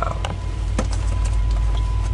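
Pair of VIA Rail F40PH-2 diesel locomotives passing close by, heard from inside a car: a deep, steady engine rumble, with one engine putting out dark exhaust under power. A few sharp clicks are scattered through it.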